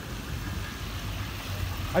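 Low, steady rumble of a vehicle engine running somewhere near, under general outdoor background noise.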